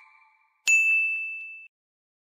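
The last of a fading chime, then a single bright ding that starts about two-thirds of a second in and rings out over about a second: a notification-bell sound effect on a subscribe-button animation.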